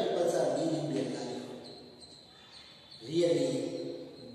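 Several voices reciting together in rhythm, a class speaking in unison, in two stretches: the first second and a half and again near the end.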